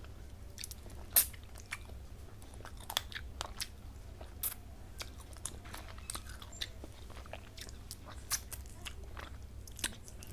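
Close-up eating sounds of rice and fish curry eaten by hand: chewing with irregular sharp mouth clicks and smacks, the loudest about a second in, over a steady low hum.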